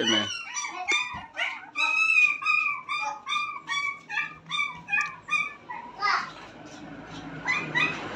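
Puppy whimpering: a rapid string of short, high whines, about three a second, that stops about five seconds in.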